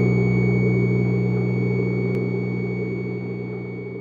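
A held chord on distorted electric guitar from the background music, ringing on steadily and slowly fading out.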